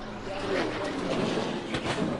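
NASCAR stock car V8 engines passing at racing speed, their pitch sliding as they go by, with a sharp bang near the end.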